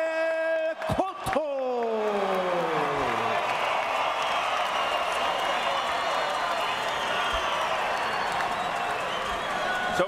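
Arena crowd cheering and applauding the announced winner of a boxing match. This follows the ring announcer's drawn-out call of the winner's name, which slides down in pitch and fades out about three seconds in.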